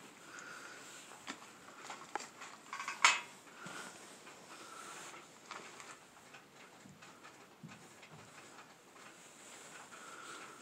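Scattered knocks and clinks of debris as someone moves through a cluttered basement, with one louder clatter about three seconds in.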